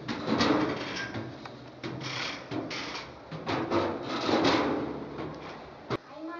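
Footsteps climbing a staircase: a series of uneven thumps and scuffs, several a few tenths of a second to about a second apart.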